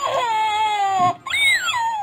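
A voice acting out a toddler's crying: two long wails, the first sliding slowly down in pitch, the second higher, rising and then falling.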